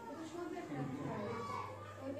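Faint, overlapping voices of several students calling out answers to a question, with a low steady hum coming in about halfway through.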